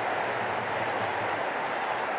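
Steady stadium crowd noise, an even wash of many voices with no single shout standing out.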